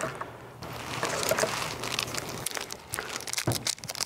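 A person sitting down in a patio chair and handling something in their hands: irregular rustling and crinkling with scattered light clicks, and a sharper knock near the end.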